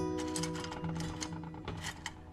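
Background guitar music: a chord rings out at the start and slowly fades. Over it come light, scattered clicks of small circuit-board gold-finger strips knocking together as a hand sorts through them in a bowl.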